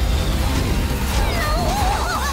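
Anime action-scene soundtrack: a heavy low rumble of effects under music, with a wavering, gliding high cry in the second half.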